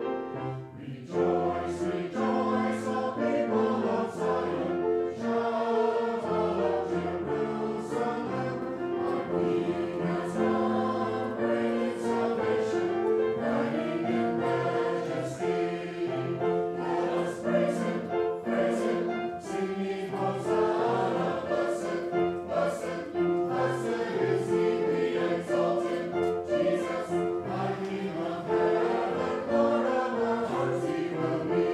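Mixed church choir singing an anthem, coming in about a second in and singing on steadily to the end.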